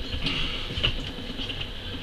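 A few light knocks and handling noises as a radio-controlled sand rail is set down, over a steady background hum.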